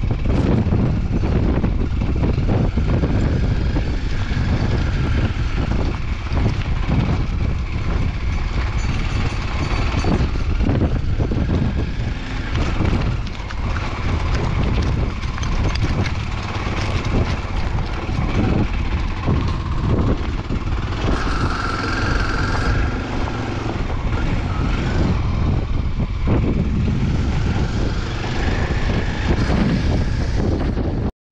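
Dual-sport motorcycle engine running at low speed on a stony gravel track, with a continuous rumble of wind on the microphone and frequent knocks and rattles from stones under the tyres and the bike's bodywork.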